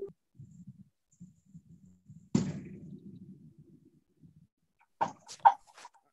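A single thump a little over two seconds in, over faint low muffled background noise.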